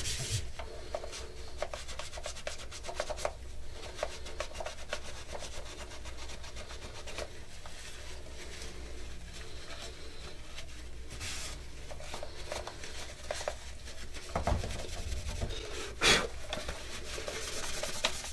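A cloth rubbing and buffing a hard armor bracer to polish off freshly applied Rub 'n Buff wax finish, a run of quick scratchy strokes. One sharper, louder stroke about 16 seconds in.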